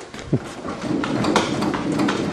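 Slack elevator control cables inside the tailcone of a Grumman AA-5B Tiger slapping against the cabin floor as the elevator is pumped up and down: a run of irregular knocks. The cable tensions are far too loose and the aircraft is badly out of rig.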